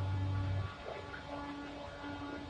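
Steady low hum of idling diesel buses at a terminal bay, with a louder deep drone for the first half-second or so that then drops away.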